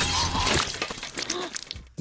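A sudden crash with a shattering, breaking sound at the start, over a groaning voice, followed by a run of sharp clatters that die away just before the narration resumes.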